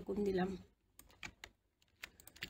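A few quiet clicks of computer keyboard keys about a second in, following a brief voice sound at the start.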